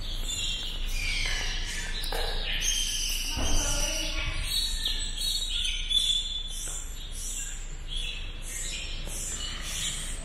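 Insects and birds calling: high chirps and short gliding calls, then a high call repeating about twice a second through the second half.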